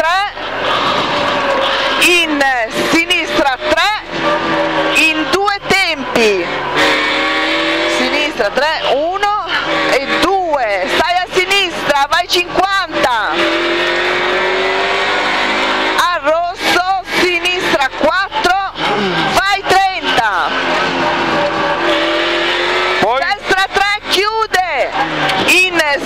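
Rover 216 rally car's 1.6-litre four-cylinder engine at race pace, heard in the cabin: it pulls up through the revs in long steady climbs, broken by stretches of quick rev rises and drops as the car brakes, shifts and is driven through corners.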